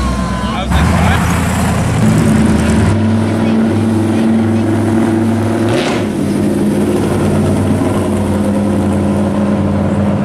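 Pro-street Chevy II Nova's engine running steadily at low speed as the car rolls slowly past, with a brief rise in pitch just before the middle.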